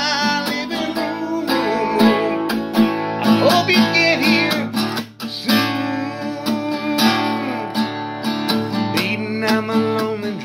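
Acoustic guitar strummed steadily in an instrumental break between sung lines, with a brief drop in the playing about five seconds in.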